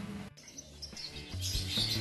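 Background music breaks off about a third of a second in, and small birds start chirping over a soft musical backing, the chirping thickest near the end.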